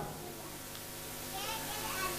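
Faint background voices over a low steady hiss in a hall, a little clearer from about a second and a half in.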